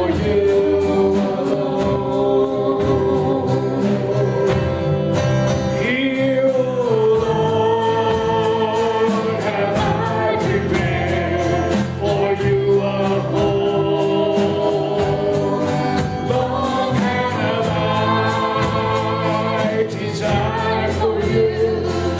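A woman singing a gospel worship song into a microphone, holding long notes, over a steadily strummed acoustic guitar.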